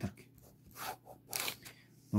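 Ballpoint pen scratching on paper in a few short strokes as lines are drawn, the longest stroke about three quarters of the way through.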